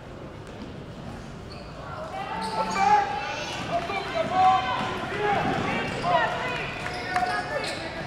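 A basketball bouncing on a gym floor among the voices of players and spectators, which grow louder about two seconds in.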